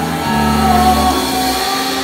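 Live band playing the instrumental close of a slow Indonesian pop ballad, with steady held bass notes and sustained chords.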